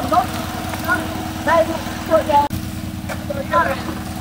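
An engine running steadily: a low, even hum with a rumble beneath it, briefly cut off about halfway through. Short snatches of people talking come and go over it.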